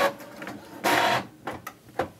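Epson EcoTank ET-3830 inkjet printer printing: a short burst of print-head travel, a longer pass about a second in, then a few small clicks near the end.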